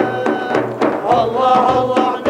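A group of men's voices singing a devotional hymn together in long held notes, accompanied by several large frame drums struck in a steady beat.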